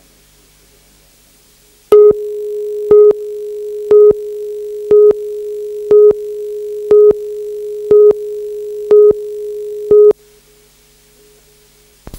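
Broadcast videotape countdown leader: a steady single tone with a louder beep every second, nine beeps in all. It starts about two seconds in and cuts off about eight seconds later.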